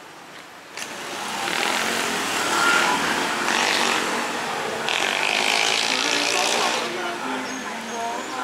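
Street traffic, with vehicles passing close by. The noise rises sharply about a second in and stays loud for several seconds before easing off near the end.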